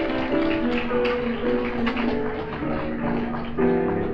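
Live traditional New Orleans jazz: a short instrumental passage from the band's rhythm section, with steady held notes in the middle range.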